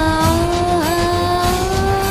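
A song playing: a singer holds one long, steady note that dips briefly about a second in, over the accompaniment.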